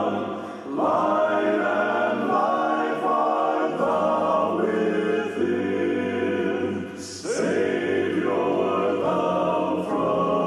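Male gospel quartet singing in close four-part harmony through microphones, holding long chords, with short breaks between phrases about half a second in and again at about seven seconds.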